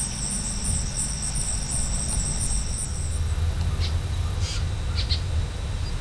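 Midsummer marsh ambience: an insect trilling in a steady, fast-pulsed high rhythm that stops a little after halfway, followed by a few short high chirps, over a low steady rumble.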